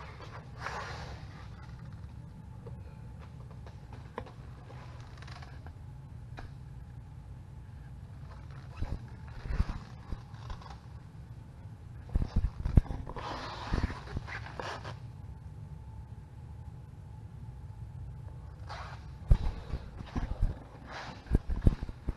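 Handheld camera handling noise, rustles and a few knocks in scattered bursts, with soft breathing, over a steady low hum.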